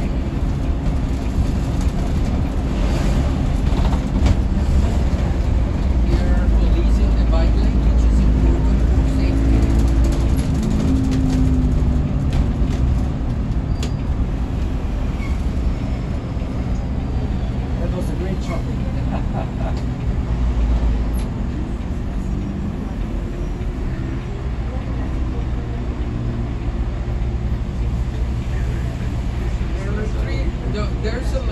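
Cabin noise of a BRT bus on the move: the engine and drivetrain running over road rumble. The engine note climbs and falls away about ten seconds in, and the bus slows into a station in the second half.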